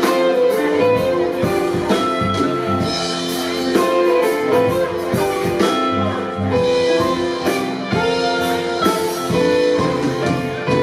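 Live rock band playing an instrumental passage: electric guitar lead over a drum kit, with no singing.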